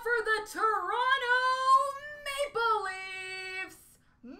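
A high-pitched voice singing wordless notes that glide up and down, the last one held steady for about a second before it stops near the end.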